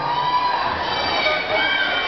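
A concert crowd of fans screaming and cheering, with many shrill high voices overlapping and each held for a moment.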